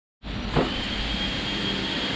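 Steady machine running noise with a thin, high, steady whine over it, starting abruptly just after the beginning, with one brief louder sound about half a second in.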